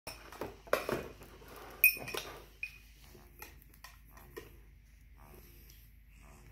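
A baby handling a soft cloth book on a high-chair tray: rustling fabric and a few sharp taps and clicks, loudest in the first two seconds, then fainter small ticks.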